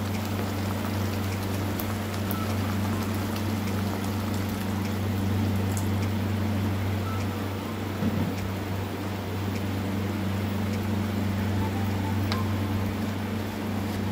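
Rasam simmering over a low flame in a clay pot: a steady bubbling hiss of liquid at the boil, with a steady low hum underneath.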